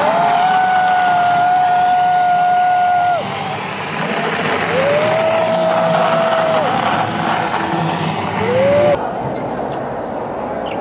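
A horn blown three times over a steady wash of crowd noise. The first blast lasts about three seconds, the second about two, and a short third one comes near the end. Each blast swoops up in pitch as it starts and then holds one note.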